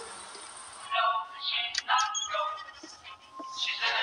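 Film soundtrack: a steady hiss that cuts off about a second in, then high, wordless singing with gliding pitches.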